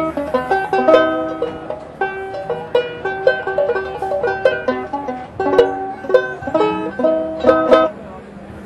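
Kumalae open-back banjo ukulele with a walnut pot, picked in a quick run of plucked notes and chords with a bright sound that really sounds like a banjo.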